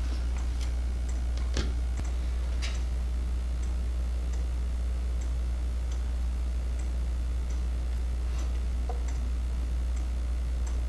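A 3D-printed plastic pendulum wall clock with a deadbeat escapement ticking: soft, sharp clicks a little under a second apart, over a steady low hum.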